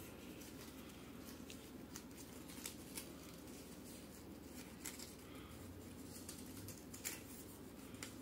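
Faint crinkling and creasing of a paper strip being folded back and forth like an accordion, with a few soft, short clicks over a steady low room hum.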